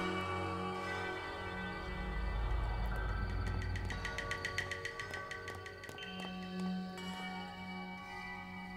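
Background music score: soft held chords with chime-like bell tones, and a quick run of evenly spaced ticking notes in the middle.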